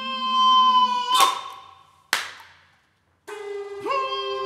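A bass recorder holds a long note rich in overtones, with a lower wavering tone beneath it. The note stops about a second in with a sharp clap, and a second sharp clap rings out about a second later. After a moment of silence, a breathy onset leads back into a sustained recorder note just before the end.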